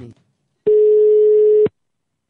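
A single steady telephone line tone, about a second long, starting a little over half a second in and cutting off sharply. The tail of a shouted word fades out at the very start.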